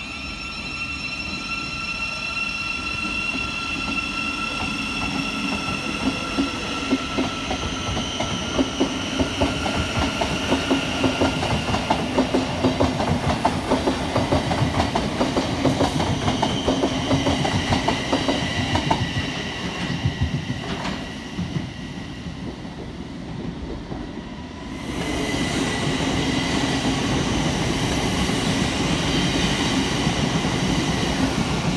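Thameslink Class 700 electric trains: one pulls out with a steady electric whine, then its wheels clatter rhythmically over the rail joints as the carriages roll past. The sound eases off around 20 seconds in, and from about 25 seconds a second train comes loudly along the near platform, rolling with a steady whine.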